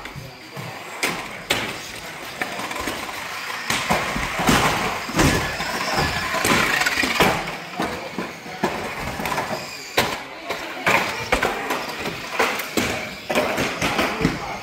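Small RC banger cars racing on a carpet track: a motor whine with repeated sharp knocks as the cars hit the barriers and each other.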